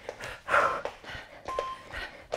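Footfalls and breathing of people doing fast high-knee cardio steps on a studio floor, in uneven bursts, with a short high tone about one and a half seconds in.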